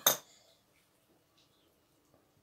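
A metal kitchen utensil gives a single short clink right at the start, followed by quiet.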